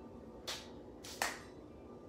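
A person's hands coming together twice, about half a second and just over a second in, the second time sharper, like a light clap.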